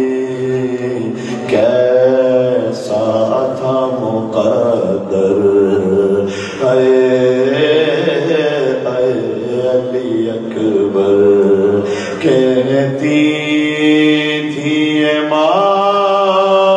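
A man's voice chanting a melodic lament into a microphone, long held notes that slide up and down in phrases a few seconds long.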